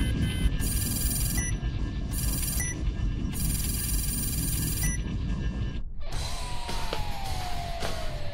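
Sci-fi targeting-scope sound effects over a loud low rumble: several bursts of high electronic beeping in the first five seconds. After a brief dip about six seconds in comes a long, slowly falling whine with a few sharp knocks.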